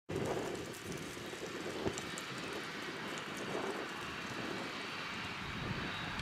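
Steady outdoor background rush with a faint high whine and a few small clicks.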